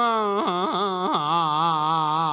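A man singing a long drawn-out note in Xihe dagu drum-ballad style. His voice slides down and wavers through a few ornamental turns, then settles on a low held note with a steady vibrato about a second in.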